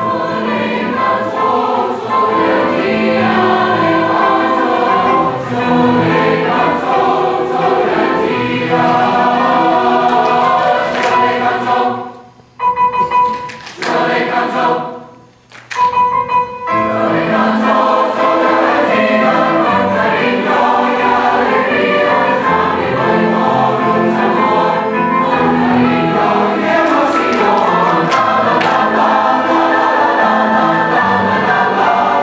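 Large mixed youth choir singing a Venezuelan song in Latin dance rhythm. The singing breaks off in two short rests about halfway through, then comes back at full strength.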